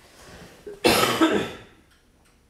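A woman coughing: a hard cough about a second in that trails off, from a lingering cold.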